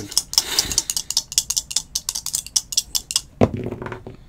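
Two dice rattling in cupped hands, a rapid run of clicks as they are shaken, then thrown onto a cloth table mat with a louder clatter about three and a half seconds in.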